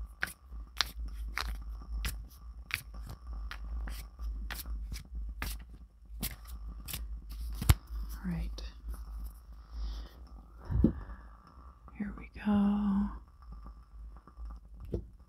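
A tarot deck being shuffled by hand: the cards snap and tap against each other in a string of crisp clicks, about two a second, for the first half, the sharpest about halfway through, then quieter card rustling. A short hummed voice sound comes near the end, over a steady low hum.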